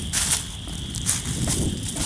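Rustling and crackling handling noise, with a couple of sharp knocks just after the start, over a low steady rumble.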